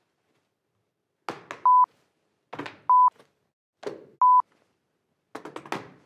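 Three short spoken fragments, each cut off by a brief steady censor bleep, with dead silence between them. Speech starts again near the end.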